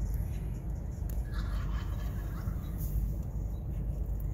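A wild turkey tom gobbling once, a call of about a second starting a little over a second in, over a steady low rumble.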